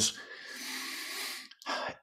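A man's long in-breath, a soft airy hiss lasting over a second, taken in a pause mid-sentence, followed by a brief mouth noise just before he speaks again.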